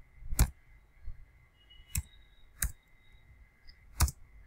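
A few separate keystrokes on a computer keyboard, sharp clicks spaced irregularly with pauses between them, as a command is typed slowly.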